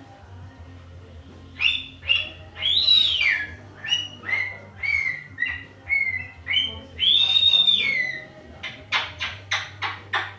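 Sulphur-crested cockatoo calling a string of about ten whistle-like sliding notes, most falling in pitch, with a longer held note about seven seconds in. Near the end it gives a quick run of short, sharp calls.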